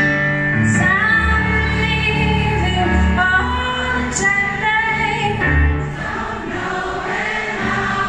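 A woman and a man singing a slow ballad together, with acoustic guitar and piano accompaniment, recorded live from the audience.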